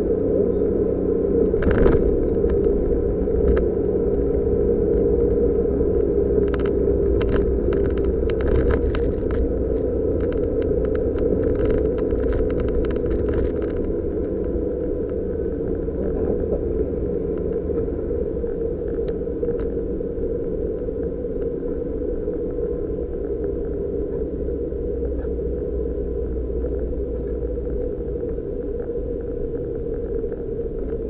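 Suzuki Jimny JB23's 660 cc three-cylinder engine droning steadily with road rumble, heard from inside the cabin while driving. A scatter of light ticks and taps runs through the first half.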